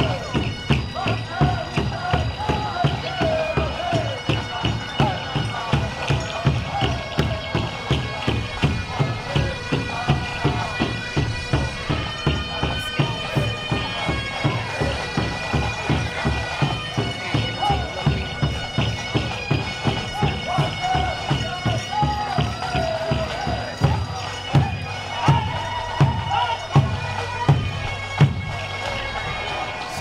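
Powwow drum beating a steady pulse of about two strokes a second, with singers chanting in high, gliding voices over it.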